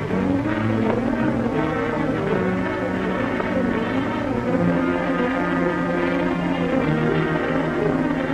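Orchestral background music with long held notes.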